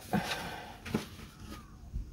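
Faint rustling of paper scratch-off lottery tickets being handled, with a couple of light clicks.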